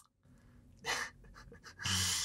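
Two short breathy puffs from a man, about a second apart, the trailing breaths of a laugh.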